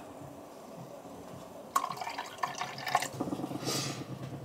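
A drink poured from a bottle into glass coupes, with splashing drips and fizzing that begin a little under two seconds in.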